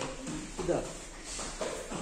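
Speech only: a man's voice saying "bir daha" ("once more").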